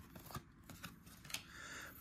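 2023 Topps Series 1 baseball cards being slid and flicked one behind another in the hands: faint, scattered light clicks and rustles.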